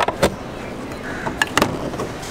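Car door handle and latch clicking as the door is opened: two sharp clicks at the start and another pair about a second and a half in.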